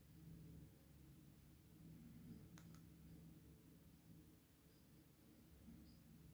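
Near silence with a faint low room hum, broken by two faint clicks close together about two and a half seconds in, from handling the iPhone.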